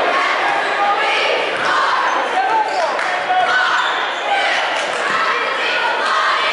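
Basketball dribbled on a hardwood gym floor, over a continuous hubbub of crowd and player voices echoing in a large gym.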